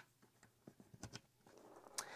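Near silence with a few faint clicks of RCA plugs being pushed into the jacks of a Slingbox Solo.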